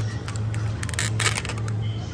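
Groceries and a plastic shopping basket being handled: a short run of clicks and crinkles about a second in, over a steady low hum.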